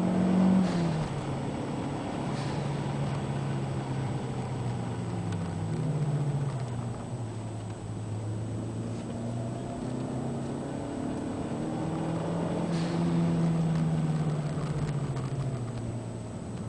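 Toyota MR2 Turbo's turbocharged four-cylinder engine heard inside the cabin under track driving. Its pitch drops about a second in and again around five seconds. It climbs steadily on the throttle from about ten seconds, then falls away again near the end.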